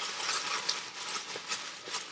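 Hands rummaging in a box and handling a cassette tape: a steady rustling with small clicks and taps scattered through it.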